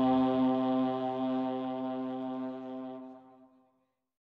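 A folk wind instrument holding one long steady note, fading away and cutting off about three and a half seconds in.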